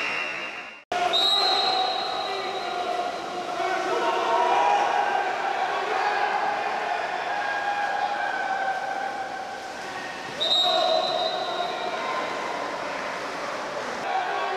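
Water polo match in an echoing indoor pool hall: voices calling and shouting over the noise of splashing water. A high, steady whistle-like tone sounds twice, once about a second in and again, louder, a little after ten seconds. There is a sudden brief dropout just before the first tone.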